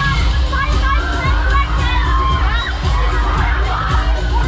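Riders on a spinning Break Dance fairground ride screaming and shouting over loud ride music with a heavy bass.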